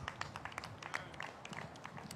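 Faint, irregular handclaps, a scattered few at a time.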